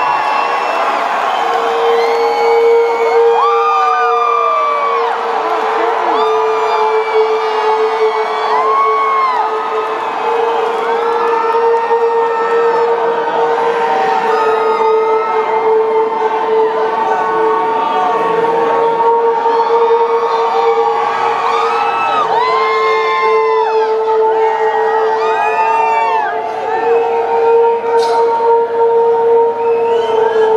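Concert crowd cheering, whooping and shouting over a steady, sustained drone from the band's amplified instruments, a held note that comes in about two seconds in and carries on unchanged, the opening of the song before the full band starts.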